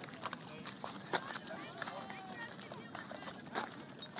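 Horses' hooves thudding irregularly on sandy ground as they walk and trot past, with indistinct voices of people in the background.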